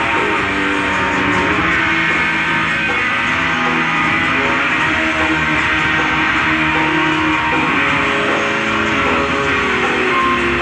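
Live rock concert recording of electric guitar playing through a large PA, with many sustained notes ringing and overlapping.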